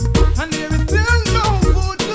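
Reggae riddim: a deep, steady bass line under drums and percussion on an even beat, with a melodic line gliding in pitch about a second in.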